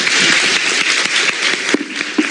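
Audience applauding, with steady clapping that thins out near the end.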